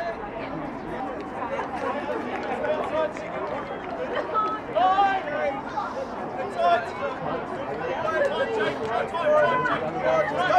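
Several indistinct voices of touch-football players and spectators calling out and chatting over one another.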